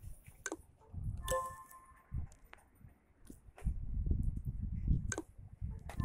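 Several sharp clicks at uneven intervals, with low thumps of handling noise on the microphone, loudest in the second half.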